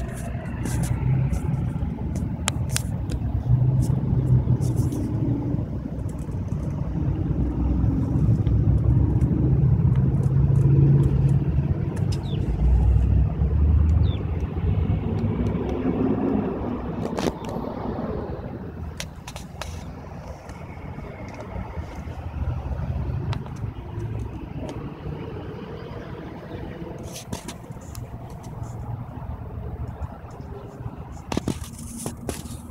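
Low, uneven rumble of a car heard from inside the vehicle, swelling in the middle and easing off later, with scattered sharp clicks from the camera being handled.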